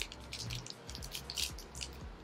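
Foil blind-bag wrapper being torn open and crinkled by hand: a run of quick, irregular crackles over a low steady rumble.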